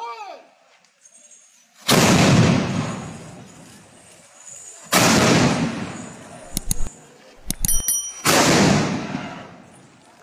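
Three ceremonial field cannons fired in turn, about three seconds apart: each a loud boom followed by a long fading echo.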